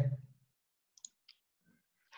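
A voice trails off at the start, then two faint, short clicks about a second in.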